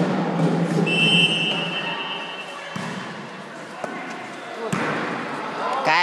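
Volleyball being struck or bouncing on a gym floor, two sharp smacks about three and five seconds in, among children's voices and shouts echoing in a large hall.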